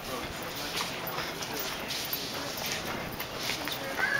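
Irregular footsteps of several people walking in flip-flops and sandals on a concrete dock walkway, slapping and scuffing, with faint voices in the background.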